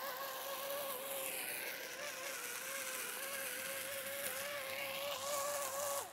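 Electric bubble blower's small motor and fan running with a steady buzzing whine, its pitch wavering slightly over a hiss of air. It cuts off suddenly at the end.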